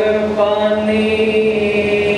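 A man's voice chanting a Sikh prayer into a microphone, holding long, drawn-out notes.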